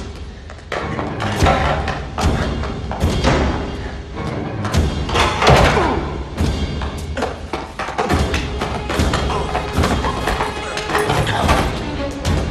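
Tense film score with heavy percussive hits and thuds recurring about once a second, with faint voices under it.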